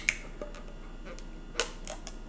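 A few sharp clicks and crinkles from a honey bottle's inner seal being picked and peeled off the bottle mouth. Two come right at the start and two more near the end. No hiss of escaping gas is heard, which is taken as the sign that the honey is not fermenting.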